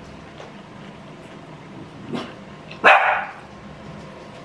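A household dog barking: a short, faint sound about two seconds in, then one loud bark about three seconds in.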